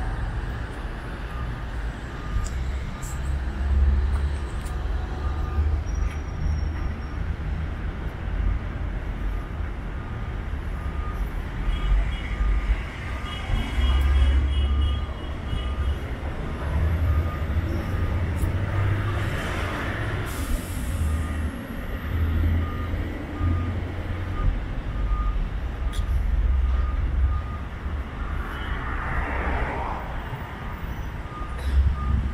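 Street traffic with a vehicle's reversing alarm beeping at an even pace almost the whole time, over a continuous low rumble. The traffic noise swells louder about twenty seconds in.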